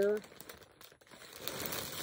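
Plastic mailer bag crinkling as hands rummage through it, faint at first and louder over the second half.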